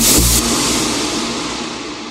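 Closing hit of a progressive house track: a kick with a crash-like burst of noise that rings out and slowly fades, growing duller as it dies away, with no beat after it.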